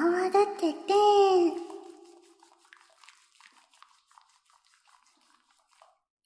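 A young girl's voice hums without words for the first second and a half. Then faint, scattered soft crackles and drips follow: the sound effect of soapy scrubbing and water during back-washing in a bath.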